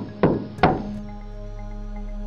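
Two quick, hard knocks on a sheet-metal gate in the first second, each with a short ring, following on from the tail of an earlier knock. Background music with sustained tones underneath and carrying on after the knocking stops.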